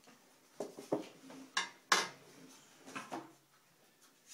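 Parts of a KitchenAid mixer juicer attachment being handled and set down: several short clicks and knocks, the sharpest just under two seconds in.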